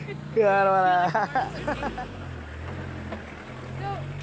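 A person's long, high-pitched vocal exclamation, with laughter, in the first second, then a low steady hum under faint talk.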